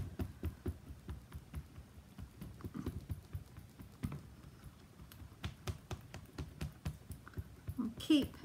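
VersaMark ink pad dabbed again and again onto a large crackle-texture rubber stamp, a run of soft irregular taps several a second, to cover the whole stamp in ink.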